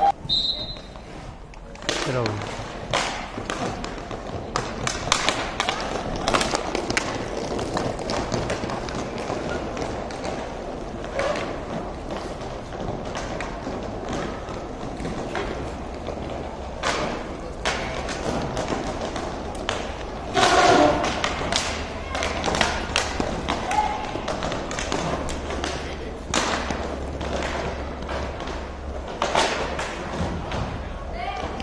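Inline hockey play on a plastic tile rink: repeated sharp knocks and clacks of sticks hitting the puck and each other, over the rolling of skate wheels. Shouts from players or onlookers come at the start and again loudly about two-thirds of the way through.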